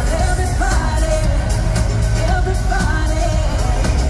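Live pop music played loud over a stadium sound system: a sung melody over a heavy, steady bass, picked up by a phone in the stands.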